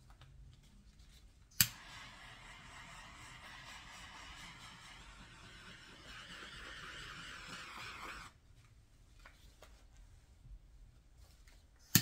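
Small handheld gas torch clicking as it lights, then its flame hissing steadily for about six and a half seconds before it shuts off; another sharp ignition click comes at the very end.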